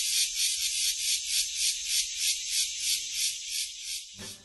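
Cicadas in a tropical rainforest, a high buzzing chorus that pulses about three times a second.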